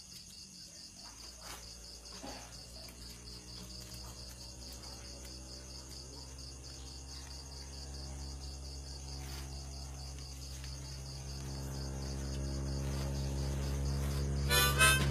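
Crickets chirping in a steady, evenly pulsing trill, under a low hum that comes in about a second in and grows steadily louder toward the end.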